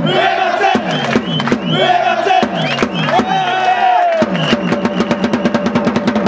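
A cheering-section crowd chanting a player's name in unison, each call punctuated by marching-drum beats. About four seconds in the chant stops and gives way to a fast drum roll under a long held trumpet note.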